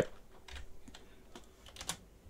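A few faint, irregular clicks, the loudest near the end.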